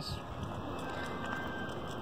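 Steady outdoor background noise: an even, soft hiss of wind and flowing stream water, with no distinct event.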